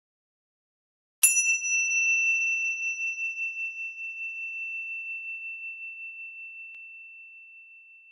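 A single high-pitched chime struck once about a second in, ringing on one clear tone that fades slowly with a gentle wavering.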